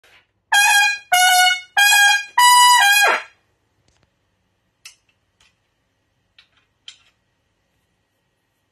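Trumpet playing a short phrase of four notes, the last one longer and ending in a quick downward slide in pitch. A few faint clicks follow.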